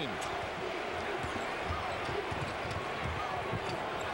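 Steady arena crowd noise with a basketball thudding on the hardwood court a few times as it is dribbled.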